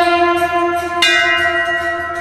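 Background music of ringing bell tones, with a fresh bell strike about a second in that rings on and slowly fades.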